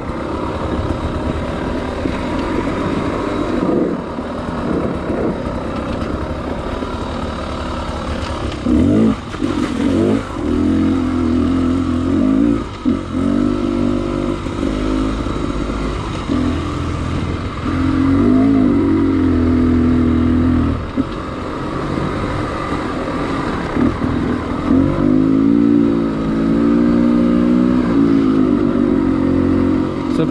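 Enduro dirt bike's engine, heard close from the rider's helmet, revving up and easing off again and again with the throttle while riding singletrack. There are longer, stronger pulls near the middle and toward the end.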